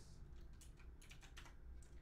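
Computer keyboard keys being pressed: several quick, faint clicks spaced irregularly, as when typing shortcut keys.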